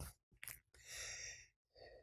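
A man's faint in-breath between spoken phrases, about a second in, just after a small mouth click; otherwise near silence.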